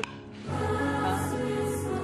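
Choral background music with held notes swells in about half a second in, just after a brief laugh.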